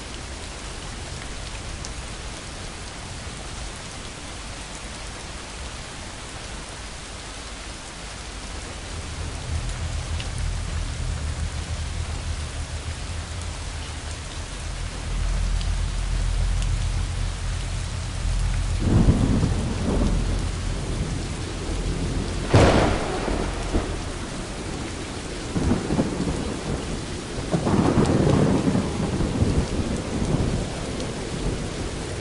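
Steady rain with thunder. A low rumble builds about a third of the way in, then several louder rolls come in the last third, with one sharp crack among them.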